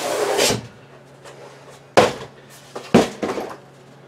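A black 4-inch steel stovepipe and its cardboard box being handled: a brief rustling scrape as the pipe slides in the box, then two sharp knocks about a second apart as things are set down, with a few light clicks after.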